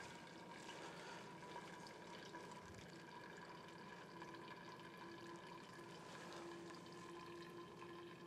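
Near silence: faint room tone with a steady hum, joined about four seconds in by a second low steady tone.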